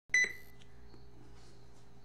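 A single short electronic beep right at the start, one clear high tone that dies away within about half a second, followed by steady low hum and room tone.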